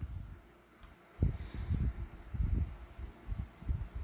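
Low, dull handling bumps and rumbles as a plastic model ship section is turned over in the hands, with a faint click about a second in.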